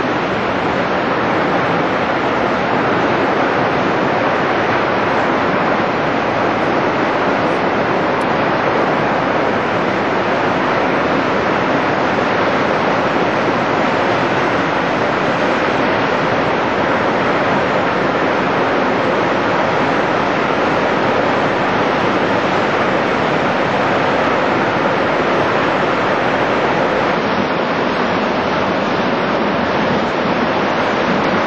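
Steady rushing of a large waterfall, Nevada Fall, heard close up as a loud, even wash of water noise without a break.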